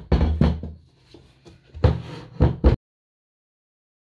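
A wooden blending board being handled and set on a tabletop, knocking against it: one knock at the start, one about two seconds in, then two in quick succession. The sound cuts off abruptly just before the three-second mark.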